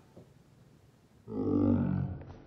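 A low, voice-like grunt, about a second long, starting a little past halfway after a moment of quiet.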